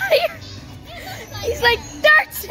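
Young children's voices: high-pitched chatter and squeals with no clear words.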